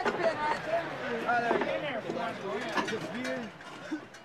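A man's voice, a rodeo announcer calling the action, with words too unclear to make out and some background chatter; it fades near the end.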